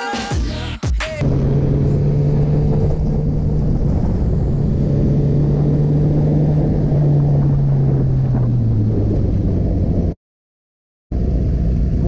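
Music briefly, then a sport motorcycle's engine heard from an onboard camera, holding a steady note with road and wind noise. The revs drop in pitch about two-thirds of the way through, and the sound cuts out for about a second near the end before returning.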